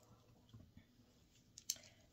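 Near silence: quiet room tone, with a single faint click near the end.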